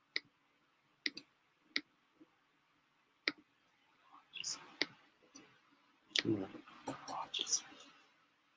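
A few faint, sharp clicks about a second or more apart, followed in the second half by faint, quiet talking.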